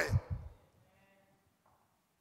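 A man's voice trails off at the end of a drawn-out word in the first half second, then near silence.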